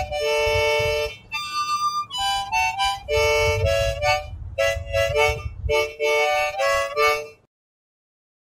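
Harmonica played solo, cupped in the hands: a melody of short and held notes, often two or three sounding together, that stops abruptly about seven seconds in.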